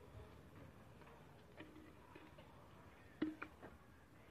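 Mostly quiet, with a few faint isolated ticks and then a short cluster of sharper clicks and knocks about three seconds in.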